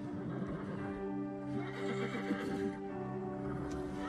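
Horses nickering and whinnying, loudest from about a second and a half to nearly three seconds in, over soft sustained film-score music.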